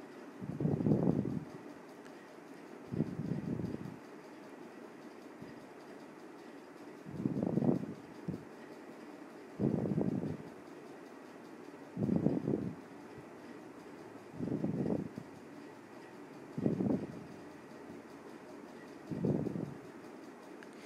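A thick, mashed mixture of jackfruit and chicken being stirred in an aluminium pan with a steel spoon. A short, dull push-and-scrape sound comes about every two seconds.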